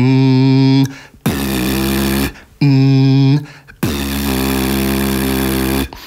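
Beatboxer's lip oscillation: the lips buzzing cleanly, without voice, to give a clear, steady pitched note. The note is held four times with short breaks, the last for about two seconds. This clean, spit-free tone is the first thing to master for the technique.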